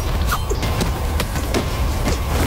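Film fight-scene sound effects: a quick series of sharp hits and short falling swishes, several a second, over a steady low rumble of score music.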